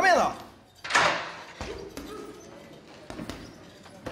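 Short non-word vocal sounds: a brief exclamation falling in pitch, then a breathy exhale about a second in, with a short soft knock a little after three seconds.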